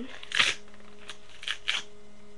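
Glossy magazine paper rustling once as the magazine is lifted, then two quick sniffs near the end at a perfume sample page.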